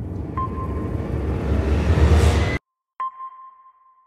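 Logo sting sound effect: a heavy low rumble under a rising hiss that swells and cuts off suddenly about two and a half seconds in. After a short silence, a single sonar-style ping rings out and fades.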